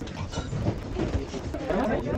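Indistinct chatter of a crowd of skiers, with the clomping of ski-boot footsteps and repeated short clicks on a metal grate floor.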